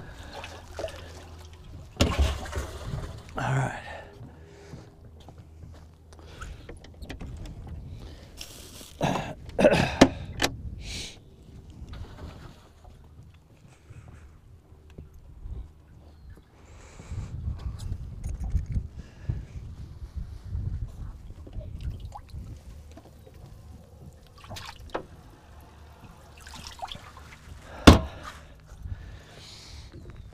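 Handling sounds in a small fishing boat: scattered knocks, clicks and rustles of gear and a freshly landed bass being moved about on the deck, with water splashing at times. One sharp knock near the end is the loudest sound.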